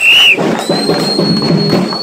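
A whistle blown in two long steady blasts over hand-clapping and crowd noise: the first ends just after the start, the second is higher and held for nearly two seconds.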